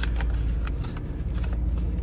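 Sheets of paper and folders being leafed through: a few light rustles and clicks. Under them runs the steady low rumble of the car's running engine.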